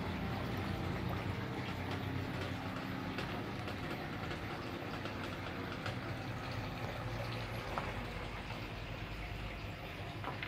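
Steady running water from a fish pond with a low hum underneath, growing slightly quieter toward the end.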